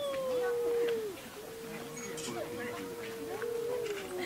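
Two cats in a standoff, yowling: long, drawn-out, wavering calls. The first fades out about a second in, and the next is held fairly steady almost to the end. It is a rival's warning yowl before a fight, which the uploader takes to be over a female.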